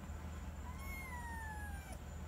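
Kitten meowing once, a single long high call starting a little under a second in that slowly falls in pitch.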